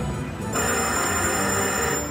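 Video slot machine's game music, then about half a second in a loud, bright, steady ringing win sound starts and holds as a free-game win pays out and the credits count up.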